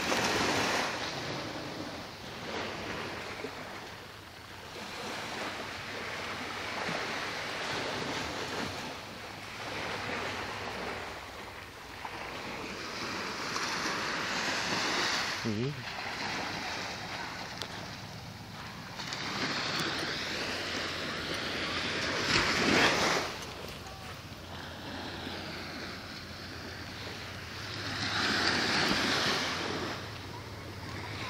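Waves washing onto a shore, the surf surging and ebbing every few seconds, loudest about two-thirds of the way through and again near the end.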